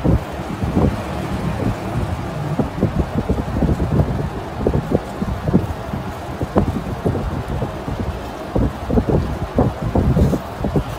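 Low rumble with irregular soft thumps and rubbing, like handling noise on a close microphone.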